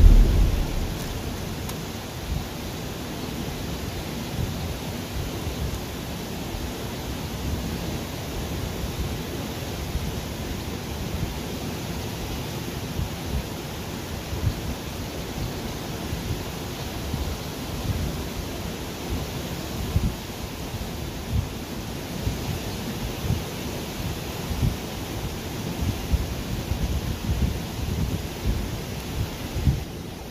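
Steady rushing of a flooded, swollen river, with wind buffeting the microphone in frequent irregular low rumbles.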